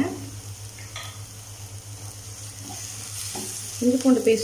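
Chopped onions, green chillies and ginger-garlic paste sizzling steadily in hot oil in a non-stick kadai, with a wooden spatula stirring them toward the end.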